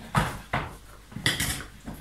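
A spatula scraping and knocking against a stainless steel Thermomix mixing bowl, a few separate strokes, while stirring a thick, sticky nougat mixture of honey, egg white and almonds.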